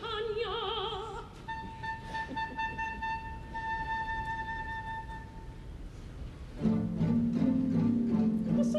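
Opera with orchestra: a soprano's vibrato phrase ends about a second in, then a single high note is held steadily for about four seconds, and about six and a half seconds in the orchestra comes in louder and fuller in the low register.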